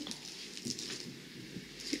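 Faint, scattered light clicks and ticks of resin diamond-painting drills being handled and set onto the sticky canvas.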